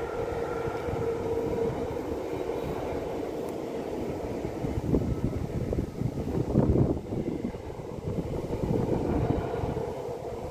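Freight train of tank wagons behind an electric locomotive rolling past, a steady rumble of wheels on rail with a faint whine early on and louder wheel clatter about halfway through.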